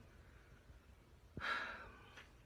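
A man's short sigh, one breathy exhale about three-quarters of the way in.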